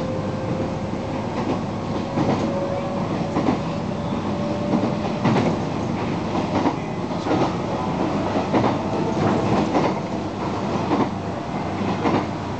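Electric train running: a steady whine from its traction motors climbs slowly in pitch as it gathers speed, over a continuous rumble. Its wheels clack over rail joints about once a second.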